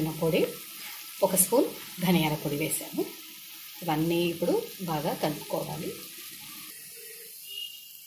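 Chickpeas and potatoes frying in a steel kadai with a steady sizzle and a few sharp spits, under a woman speaking in short phrases.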